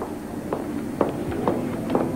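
Footsteps: a person walking across a hard studio floor, about two steps a second.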